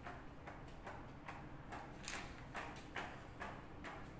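Faint, irregular light clicks and taps, about three or four a second.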